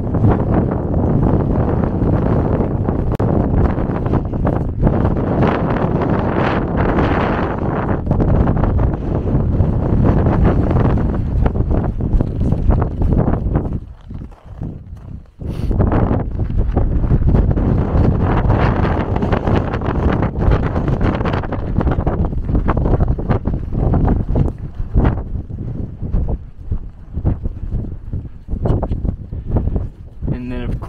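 Strong wind buffeting the microphone: a loud, heavy low rumble that rises and falls in gusts, easing briefly about halfway through.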